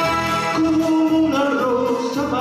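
Male singer's voice entering over a recorded orchestral accompaniment, opening a Spanish copla: a long held note begins about half a second in and then climbs.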